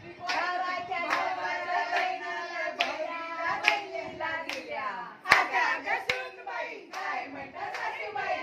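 Group of women singing or chanting a game song together, with a sharp clap about every 0.8 seconds keeping the beat; the loudest clap comes about five seconds in.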